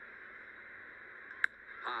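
Faint, steady ballpark crowd murmur, then one sharp crack of a baseball bat hitting a pitch about one and a half seconds in.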